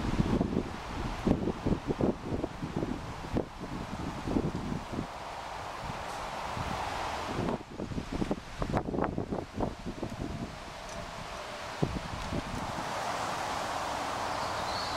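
Wind buffeting the microphone, with rustling foliage coming in irregular gusts and rumbles. It settles into a steadier, softer hiss after about ten seconds.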